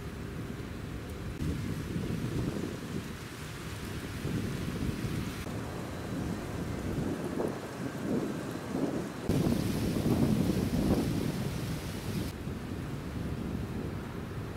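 Wind buffeting a camcorder microphone outdoors: an uneven, gusty low rumble, loudest about ten seconds in. The background hiss changes abruptly several times.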